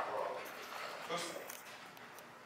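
German Shepherd dog giving short whines, one at the start and another about a second in.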